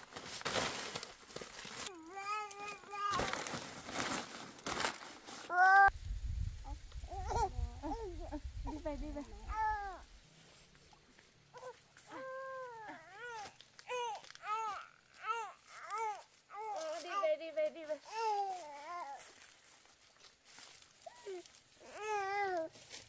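Banana leaves crinkling and rustling as they are handled, mostly in the first few seconds. A baby babbles over it in many short, high-pitched calls that rise and fall, without words.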